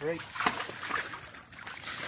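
A hooked catfish thrashing and splashing in the water of a plastic tote while the hook is being worked out of its mouth. There are two sloshing bursts, about half a second and a second in.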